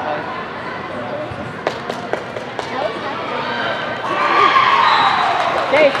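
A few sharp thuds of a soccer ball being kicked and striking hard surfaces about two seconds in, on an indoor turf field; then, from about four seconds, spectators' voices rise in a long falling "ohh".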